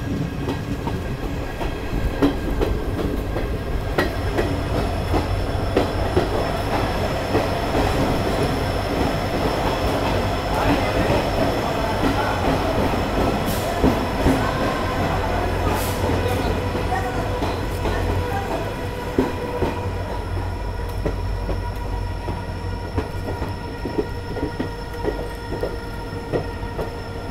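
Passenger express coaches running along the rails as the train pulls into a station, heard from an open coach door. The running noise is steady, with thin squealing tones held above it and occasional clicks from the wheels and rail joints.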